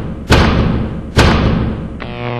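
Two heavy impact sound effects for a title-logo animation, about a second apart, each hitting sharply and ringing out as it fades.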